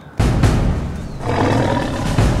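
A dubbed-in dinosaur roar sound effect that starts suddenly just after the start and swells again about halfway through, with music underneath.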